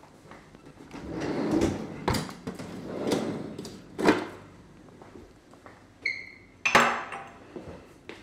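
Kitchen cupboards being opened and rummaged through, with plastic containers shuffled and knocked about and several sharp knocks. A brief squeak about six seconds in is followed by the loudest knock, typical of a cupboard door or drawer.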